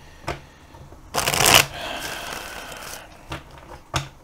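A deck of tarot cards being shuffled by hand: a loud rush of cards about a second in, then softer rustling and a few sharp taps of the deck.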